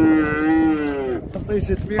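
A calf mooing: one long drawn-out call that sags in pitch and fades out about a second in.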